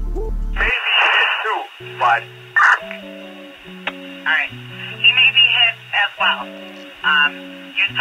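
Chicago Police Department dispatch radio heard through a scanner: short, garbled transmissions with a loud buzz in the first second as a channel keys up. Under them runs a low melody of held notes.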